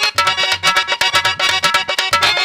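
Instrumental interlude of Bhojpuri folk music: a dholak plays a fast, even rhythm with deep bass strokes while a harmonium holds the melody notes.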